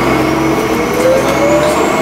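Alexander Dennis Enviro400 double-decker bus heard from inside the passenger saloon as it accelerates. Its engine and drivetrain run steadily under a whine that rises slowly in pitch.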